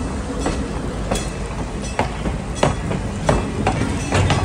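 Railroad passenger cars rolling past at slow speed: wheels clacking over rail joints in an uneven run of sharp knocks, roughly one every half second to second, over a steady low rumble.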